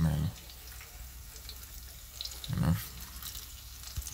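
Saltfish fritters frying in oil in a cast-iron skillet: a faint, steady sizzle with a few small crackles.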